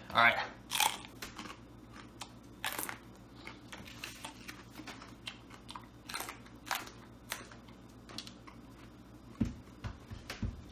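A man biting into and chewing raw whole jalapeño peppers: crisp, irregular crunches of the firm pepper flesh, close to the microphone.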